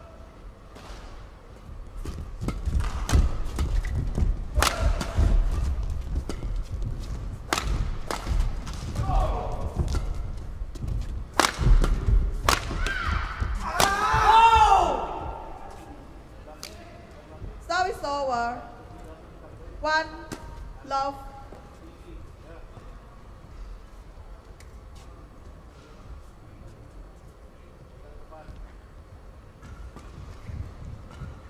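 Badminton rally: rackets strike the shuttlecock again and again at an uneven pace over thudding footwork on the court, for about ten seconds. The rally ends and a loud shout follows about halfway through, then a few shorter shouts.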